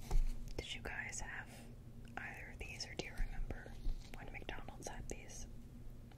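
A woman whispering softly close to the microphone, with light clicks and taps from small plastic doll figures being handled.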